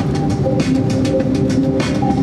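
Airliner cabin noise: a steady engine hum with a low rumble and a few sustained tones, and light clicking. It starts abruptly.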